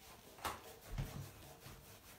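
A cloth rubbing back and forth on a ceramic toilet cistern lid, scrubbing off sticky label residue with remover. The strokes are faint, with a couple of louder ones in the first second.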